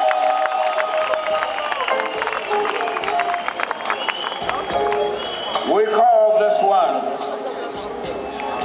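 Live concert sound: scattered audience clapping and calls over soft backing from the band, with a man's voice coming through the PA.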